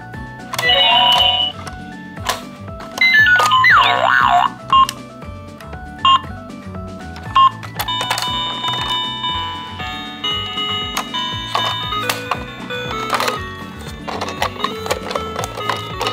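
Toy ambulance playset giving out short electronic sound clips and, later, a beeping electronic tune as its buttons are pressed, with sharp clicks from the plastic buttons. A steady music track with a repeating beat runs underneath.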